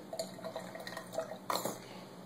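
Thick liquid baby soap pouring from a bottle into a plastic funnel, dripping and plopping in small irregular splashes, with a sharper knock of plastic about one and a half seconds in.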